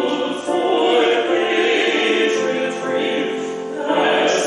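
A woman and a man singing a duet in long held notes.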